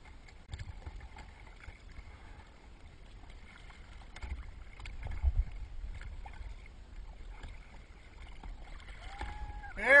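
Faint water lapping and dripping against a plastic sea kayak's hull, with small scattered splashes and a brief low rumble around the middle. A man's voice comes in near the end.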